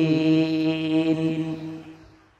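A man's voice holding one long, steady chanted note, the drawn-out close of an Arabic invocation, fading out near the end.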